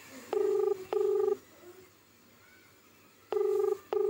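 Telephone ringback tone on a call that has not yet been answered: a low double ring, two short beeps in quick succession, heard twice about three seconds apart.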